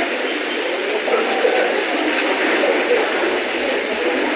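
A steady, loud hiss-like noise with faint, indistinct speech through a microphone beneath it.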